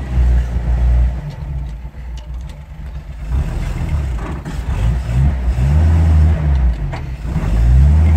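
Old Toyota 40 Series Landcruiser's petrol straight-six running unevenly as it is driven a short way. The revs sag about two seconds in, then rise several times in quick climbs before settling. The engine has only just been brought back to life on fuel tipped into the carburettor after standing unused for a long time.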